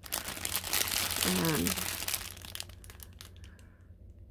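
Thin plastic zip bags of diamond-painting drills crinkling as a strip of them is handled, loudest about a second in and dying away after two seconds.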